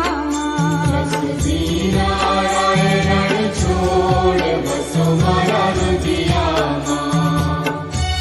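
Devotional aarti chant sung with instrumental accompaniment, over a low beat that repeats every second or two.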